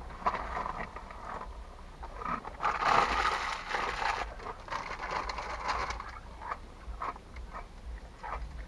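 Plastic snack bag of Cheetos crinkling as it is tipped up and handled, with a louder stretch of crinkling about three seconds in and scattered small crackles after.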